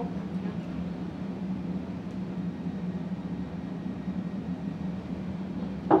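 A steady low hum with an even background hiss: room tone. There is one short sharp knock just before the end.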